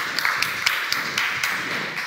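Audience applauding, a scatter of handclaps.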